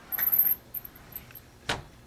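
A short jingling rattle about a quarter second in, then a few small ticks and one sharp click near the end.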